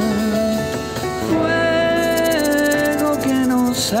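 Live band music: electro-acoustic guitars, bass and synthesizer playing a song with long held notes. A voice comes back in singing near the end.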